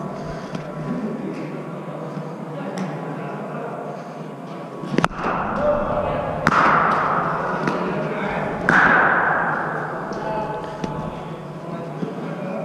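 Sharp cricket-ball impacts from the practice nets: a click about five seconds in, then two loud cracks about six and a half and nearly nine seconds in, each ringing on in a large indoor hall. Voices murmur in the background.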